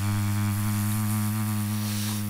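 A radio studio sound effect: one steady, low electronic buzzing tone held without change, played to mark a listener's prize being awarded.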